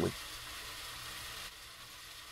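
Faint steady hiss with no tone or rhythm in it, dropping slightly in level about a second and a half in.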